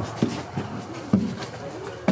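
Footsteps crossing a shop doorway, with two distinct knocks, about a fifth of a second and a second in, over a low murmur of voices.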